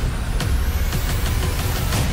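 Dramatic background score and sound effects laid over a staged stage fight: a deep steady rumble, a rising whoosh, and a run of short sharp hits in the second half.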